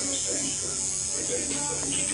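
Electric tattoo machine buzzing steadily as it works, with faint voices in the background.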